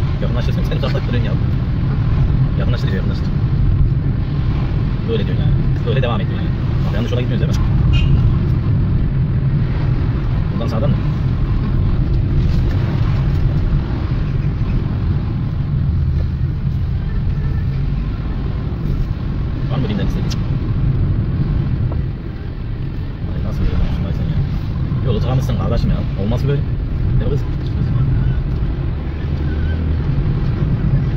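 Car cabin noise while driving, a steady low rumble of engine and road, with indistinct voices coming and going over it.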